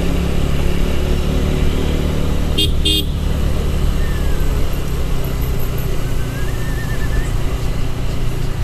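Single-cylinder motorcycle engine running at steady cruising speed, with road noise. A vehicle horn toots twice in quick succession about two and a half seconds in.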